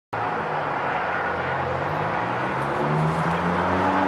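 A steady engine drone over outdoor street noise, its low hum rising a little in pitch past the middle.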